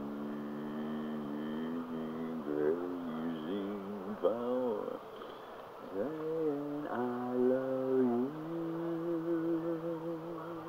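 A person humming a slow tune without words, with long held notes, a few slides up and down in pitch, and a wavering held note near the end.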